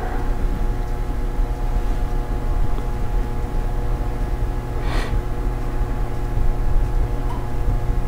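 A loud, steady low hum with several constant tones above it, from machinery or electrical equipment in the room. About five seconds in comes one short breathy burst.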